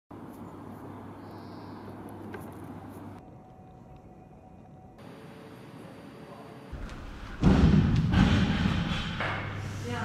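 Quiet background ambience with a low hum that shifts abruptly a few times, then a sudden loud thud about seven and a half seconds in, followed by indistinct voices.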